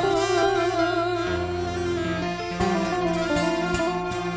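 A gambus ensemble playing live, with violins carrying a wavering, vibrato melody over the band. Sharp drum strokes come in during the second half.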